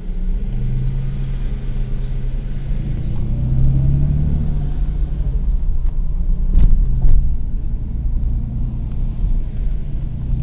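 Car engine and road noise heard from inside the cabin while driving slowly, the engine note rising and falling a little. Two sharp knocks about six and a half and seven seconds in.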